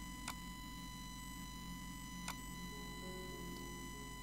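Quiet background of a steady electrical hum with a thin high whine, broken by two soft clicks about two seconds apart.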